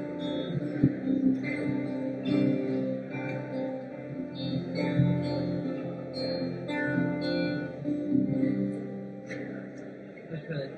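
Live acoustic and electric guitars playing an instrumental passage of picked notes and chords, growing quieter toward the end as the song winds down.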